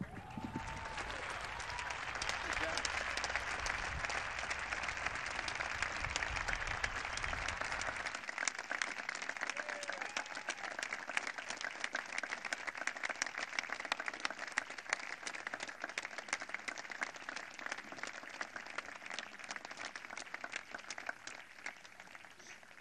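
A crowd applauding, loudest and densest over the first several seconds, then thinning out and fading away near the end.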